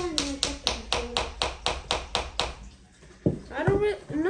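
Light, quick tapping, about four even taps a second, that stops about two and a half seconds in, followed by a couple of low thumps near the end.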